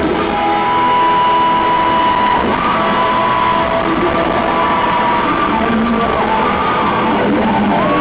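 Live rock band playing loud through an arena PA, recorded from the crowd: an electric guitar holds long notes that bend in pitch over the drums.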